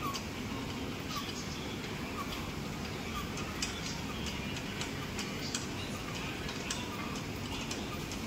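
Steady gym room noise with scattered light clicks and ticks at irregular moments.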